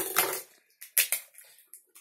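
Stiff plastic packaging crackling and clicking as a small toy figure is pried out of it: a loud crackle right at the start, then a few short scattered clicks. The figure is stuck in its holder.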